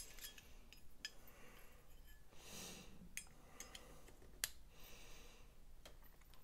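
Faint handling noise: a few small clicks and taps from a fixed-blade knife and its handle scale being turned in the hands, the clearest about four and a half seconds in. A soft breath comes about two and a half seconds in.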